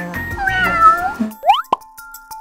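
A cat meows once, a single drawn-out call that bends up and then down, over light background music. Near the end comes a quick rising cartoon 'plop' sound effect with a click.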